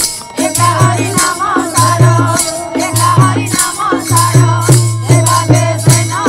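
Devotional arati music with a steady drum beat about every half second, metallic jingling on the beats, and a wavering melody line above.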